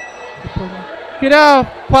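A man speaking into a handheld microphone over a sports hall's PA, holding one drawn-out syllable about a second in. Hall ambience fills the pause before it.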